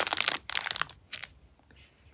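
Plastic packaging crinkling as it is handled, dying away within the first second, then quiet but for one faint tick.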